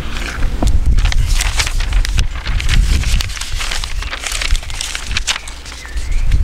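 Irregular rustling, crackling and bumping close to the microphone over a low rumble, as someone moves and handles things right beside the camera.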